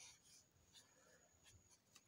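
Very faint scratching of a felt-tip board marker writing on a white board.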